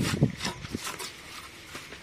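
Mason's trowel knocking and scraping on bricks and wet mortar as a brick is tapped down into its mortar bed: a few sharp knocks in the first second, then quieter scraping.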